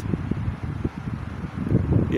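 Wind buffeting the microphone: irregular low gusts of noise.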